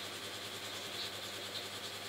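Steady low hiss with a faint hum: room tone and microphone noise, with no distinct event.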